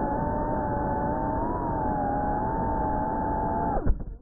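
FPV drone's electric motors and propellers whining steadily, the pitch wavering slightly up and down with the throttle. The sound cuts off abruptly with a short knock just before the end.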